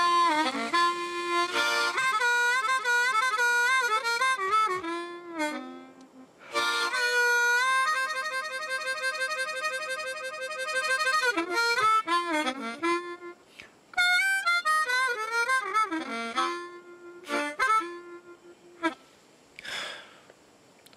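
A harmonica playing a slow blues tune, with bent notes and a long held chord partway through; it stops near the end.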